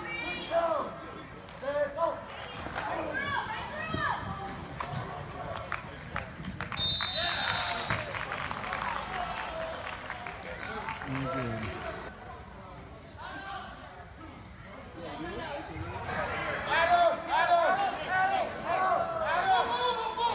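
Many voices of spectators and players shouting and talking at once during a youth football game, echoing in a large indoor hall. About seven seconds in there is a short, high whistle blast, followed by a few seconds of noisy crowd sound, and the shouting picks up again near the end.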